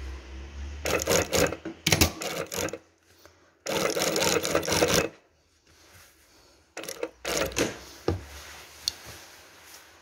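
Industrial sewing machine stitching in short stop-start bursts, with one longer unbroken run of about a second and a half near the middle.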